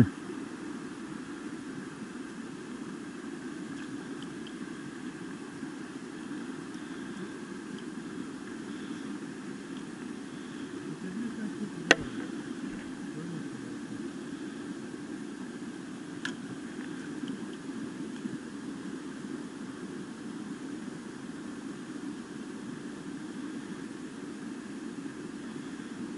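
Steady low outdoor background noise with no clear events, broken by a single sharp click about twelve seconds in.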